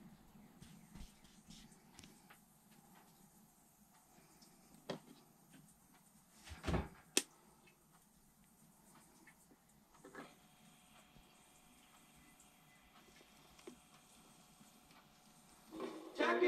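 Handling knocks and clicks on a Crosley suitcase turntable as it is set to play a 45, the loudest a pair of knocks and a sharp click about seven seconds in, with a faint steady hum after another click about ten seconds in. Just before the end the record starts playing music loudly.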